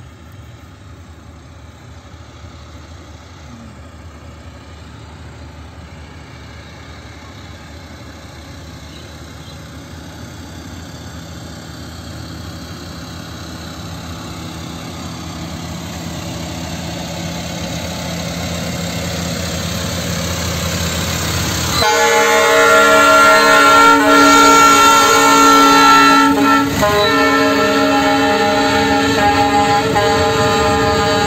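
Brandt hi-rail road-rail truck hauling loaded ballast hopper cars, its engine and the rolling cars growing steadily louder as it approaches along the track. About 22 seconds in, its horn sounds a loud multi-note chord for about four seconds, breaks off briefly, then sounds again.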